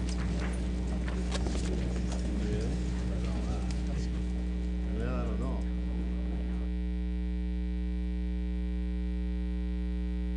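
Steady electrical mains hum in the audio feed, with faint room chatter from many people underneath for about the first seven seconds; after that only the hum remains.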